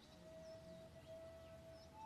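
Near silence: a faint steady tone held for most of the two seconds, with a few faint, high bird chirps.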